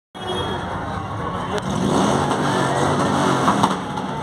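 A parade car's engine running close by over the chatter of a dense crowd, a little louder from about two seconds in.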